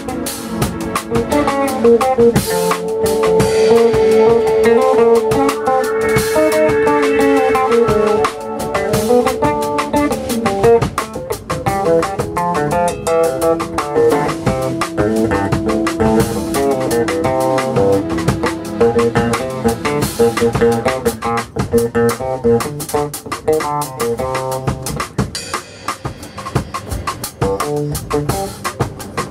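Live jazz combo playing: an electric bass plucked fingerstyle, with drum kit and cymbal hits throughout and long held higher notes ringing over them.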